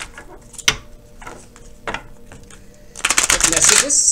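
A deck of oracle cards being shuffled by hand: a couple of separate card snaps about one and two seconds in, then a rapid run of flicking card edges near the end.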